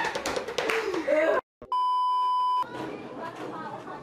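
Laughing and chatter cut off abruptly, then after a brief silence a steady electronic bleep tone of about a second, the kind inserted in video editing. Quieter background sound follows it.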